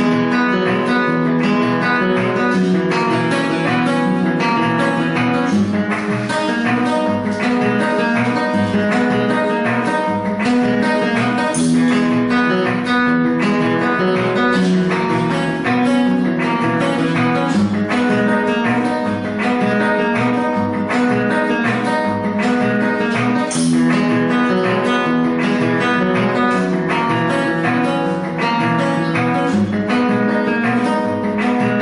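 Flamenco guitar strumming a rumba chord progression in G-sharp minor, with regular low percussive thumps from a cajón accompaniment keeping the beat.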